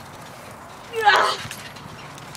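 A child laughing, one short burst about a second in.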